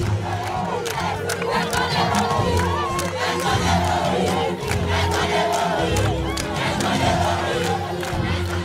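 A crowd of many voices shouting and calling together, steady throughout, over background music.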